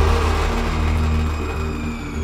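Instrumental passage of a Marathi film song: a low sustained drone under held notes that change pitch step by step, with no singing.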